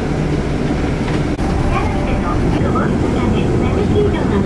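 City bus engine and road rumble heard from inside the passenger cabin, running steadily, with faint voices in the background.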